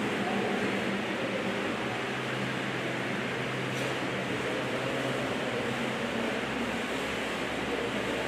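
Steady room tone: a constant hiss with a low, even hum from ventilation running in the room.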